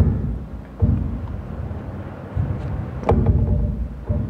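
Low rumbling noise on the microphone, swelling in several surges, with a brief voice sound about three seconds in.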